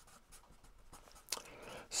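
Pen writing on paper: faint, short scratching strokes as a word is written out by hand.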